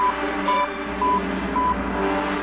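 Intro jingle: a short electronic beep repeating about twice a second over a steady synthesized drone.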